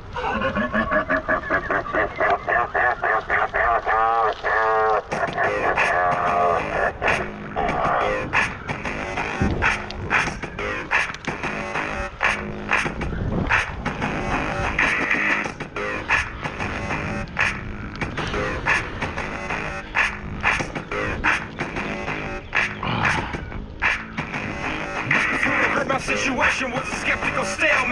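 Opening of a song that blends hip-hop with other styles. A wavering pitched intro with a short laugh comes first; about five seconds in, a steady drum beat starts and runs on.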